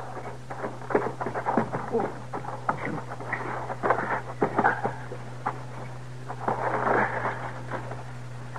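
Footsteps crunching and scrambling over rock and gravel, a radio-drama sound effect made of irregular short strokes, over the steady low hum of the old recording.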